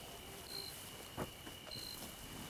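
Faint crickets chirping at night: a short high chirp repeating evenly about once a second over a steady thin high tone, with one soft click a little past a second in.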